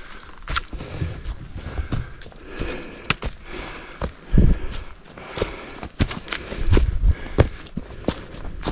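A hiker's footsteps on a leaf-covered rocky trail: irregular steps through dry leaves, with sharp clicks and knocks of a trekking pole tip striking rock.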